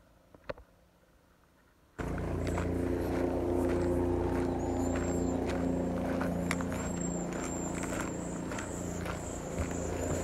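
A steady low engine hum starts suddenly about two seconds in and runs on at an even level, with footsteps on the gravel trail and a few high, thin bird chirps above it.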